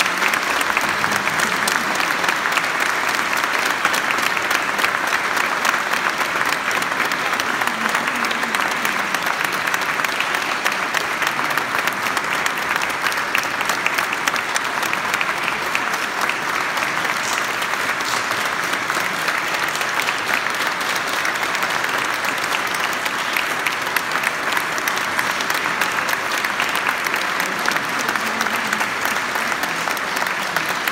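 A large audience applauding: dense, steady clapping that holds evenly without a break.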